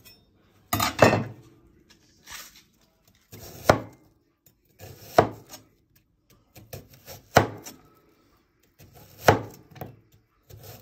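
Meat cleaver slicing down through a vegetable, about five slow, separate strokes, each a short crunch ending in a knock of the blade on the work surface, with a few lighter taps between.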